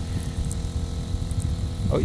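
Self-priming shower pump running with a steady hum as water sprays from a handheld shower head, over an uneven low rumble.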